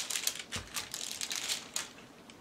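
Plastic bottles being handled and set down on a table: a quick series of light clicks, taps and rustles, with a dull knock about half a second in.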